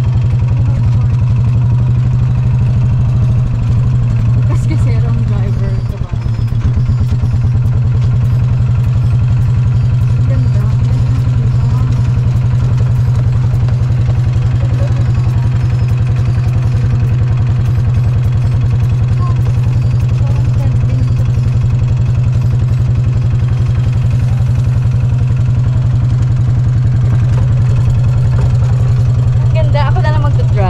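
An engine running steadily throughout, a loud low drone with a fast, even pulse.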